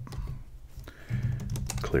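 A few keystrokes on a computer keyboard as a command is typed into a terminal.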